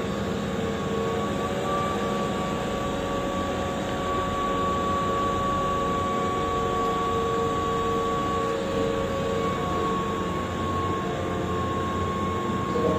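Keihan 8000-series electric train standing at the platform, its onboard equipment giving a steady hum with a constant high tone over the underground station's background noise.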